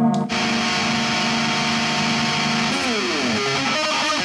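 Distorted electric guitar, a Jackson Kelly tuned to E-flat standard through a Line 6 Spider IV amp. A held chord is cut off a moment in and gives way to a dense, noisy sustain. Near three seconds a downward slide leads into a fast picked riff.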